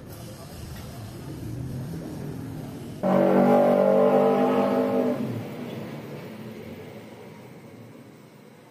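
A horn sounding once: a loud, steady pitched tone starts suddenly about three seconds in, holds for about two seconds, then fades, over a low background rumble.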